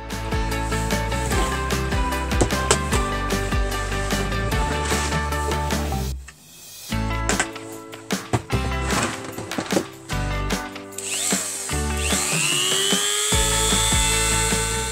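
Upbeat background music, with a handheld rotary tool fitted with a cutting disc spinning up about two seconds before the end: its high whine rises, then holds steady.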